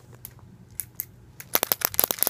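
Plastic being handled: a few scattered clicks, then, about one and a half seconds in, a quick run of crinkling crackles.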